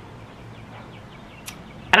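A brief pause in a man's talk: steady quiet background hiss with a few faint high chirps, and a single sharp click about one and a half seconds in. His voice comes back right at the end.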